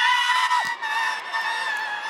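Several men shrieking together in high falsetto, mock schoolgirl screams. The scream is held long and is loudest at first, then slowly fades.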